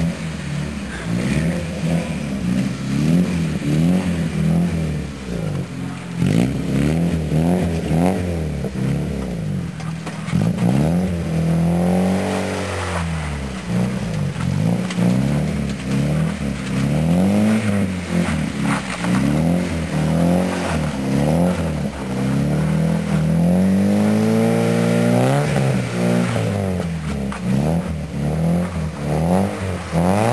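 Ford Sierra saloon engine revving up and down over and over as the car slides and spins on snow, with longer climbs in revs near the middle and near the end.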